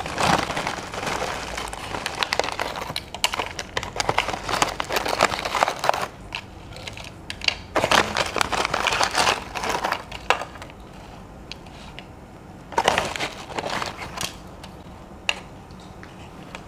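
Crispy salted-egg peyek (fried rempeyek crackers) pouring out of a plastic snack bag onto a plate, crackling and rattling with the bag rustling. It comes in spells: a long one at the start, another about halfway, and a short one near the end.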